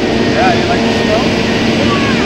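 Steady loud rush of jet aircraft engines running on an airport apron, with a low steady hum under it. A toddler's small voice chirps over it a few times and calls "Yeah!" near the end.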